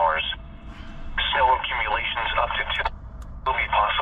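NOAA weather broadcast playing through a mobile GMRS radio's speaker: a voice reading the forecast in short phrases with pauses, thin and narrow-sounding with no bass.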